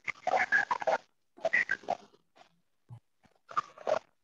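A dog barking in three short bursts, picked up over a video-call microphone.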